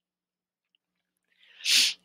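Near silence, then about one and a half seconds in, a short, loud intake of breath through the mouth, close to the microphone.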